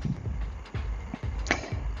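Low steady hum with faint hiss from the recording setup, a few faint ticks, and a short breathy noise about one and a half seconds in.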